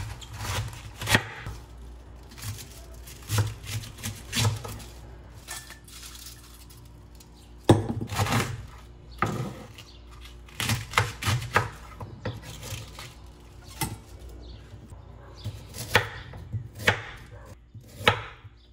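Knife cutting cabbage on a wooden cutting board: sharp knocks of the blade on the board in irregular clusters, with short pauses between them.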